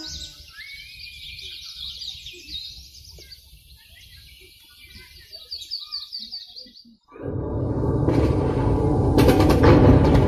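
Birdsong, a run of high repeated chirps and trills, cut off abruptly about seven seconds in. A loud low rumble with sharp crashes takes over, the sound of a bombardment in a staged war scene.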